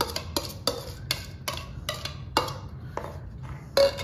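Metal spoon tapping and scraping against the rim of a small glass bowl to knock chopped cilantro into a mixing bowl: a run of sharp taps, about two or three a second. Near the end comes a short ringing clink of glass, as the small bowl is set down.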